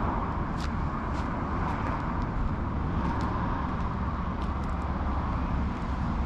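Steady outdoor background noise with a low rumble, and a scattering of light clicks.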